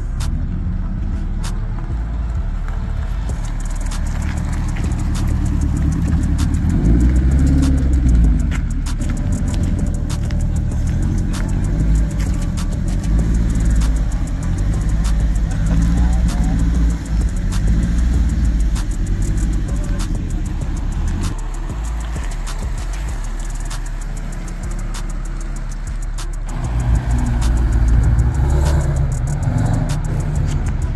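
Car engines running in a parking lot, with a deep, steady exhaust note that grows louder twice, about a quarter of the way in and near the end.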